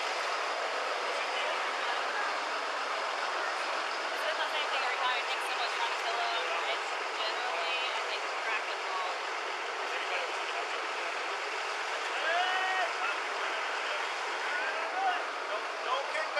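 Indistinct, distant voices of several people talking over a steady street background hiss, heard through a body-worn camera microphone.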